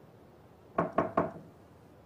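Three quick knocks on a door, about a second in, spaced a fifth of a second apart.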